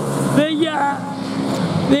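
A man's commentating voice in short bursts, over the steady background sound of racing kart engines running on the circuit.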